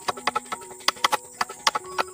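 Machete blade chopping into a wooden pole in quick, uneven strokes, about five sharp knocks a second.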